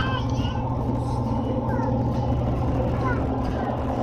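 Steady road and engine drone inside a moving car's cabin at highway speed, with faint voices now and then.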